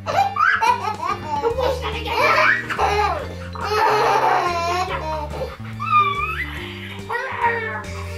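Two-year-old girl laughing hysterically in repeated bursts as she is tickled, over background music with a low bass line stepping note to note.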